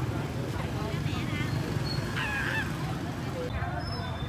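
Busy street ambience: scattered voices from a crowd over the steady low hum of motorbikes riding past.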